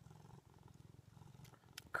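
A domestic cat purring faintly and steadily.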